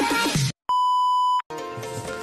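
Intro music cutting off about half a second in, followed by a single steady, high electronic beep lasting under a second, then a different background music track starting.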